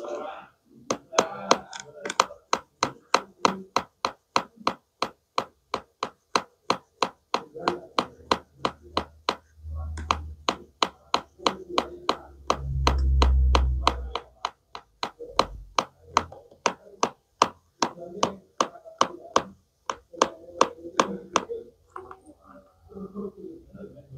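Plastic toy knife tapping rapidly and steadily against a plastic toy apple and cutting board, about three sharp taps a second. A dull low thump comes about halfway through.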